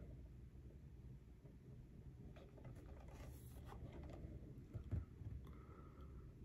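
Near silence: room tone with a few faint clicks from about two seconds in and a soft low thump about five seconds in, as a plastic DVD case is handled and turned over.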